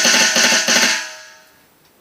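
A fast snare roll played with sticks on the snare pad of an electronic drum kit, lasting about a second and then dying away.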